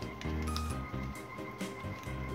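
Background music with sustained notes, with faint brief rustles of origami paper being folded and creased by hand.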